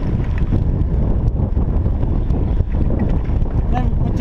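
Wind buffeting the microphone of a bicycle-mounted camera while riding: a loud, steady low rumble.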